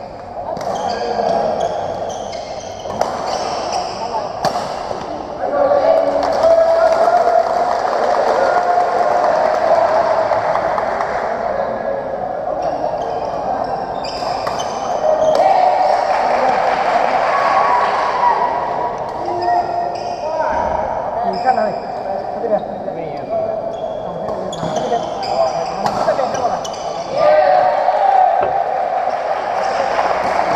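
Sharp badminton racket strikes on the shuttlecock, heard as scattered single hits over continuous chatter from the crowd of spectators.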